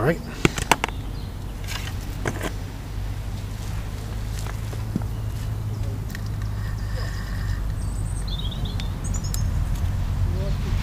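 Outdoor ambience with a steady low rumble. A few sharp clicks and knocks come in the first couple of seconds as fishing tackle is handled, and a small bird chirps in short high trills near the end.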